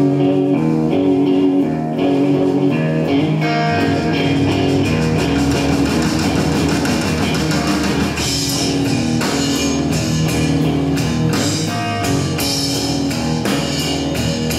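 Live blues-rock band: electric guitar playing over bass guitar and a drum kit, with the drums getting busier about two seconds in.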